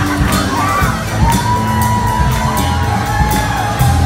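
Live band playing an upbeat rock groove with a steady drum-kit beat, while the audience cheers and shouts over it.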